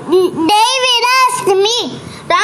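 A child's high voice chanting in a sing-song way, holding each note steady for a moment before moving on.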